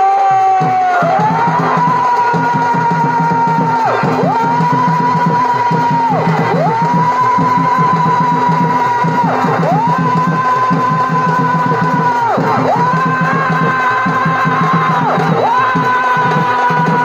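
Chhau dance accompaniment: a shehnai-like reed pipe holding long high notes, each falling away about every two and a half seconds, over rapid dhol and dhamsa drumming.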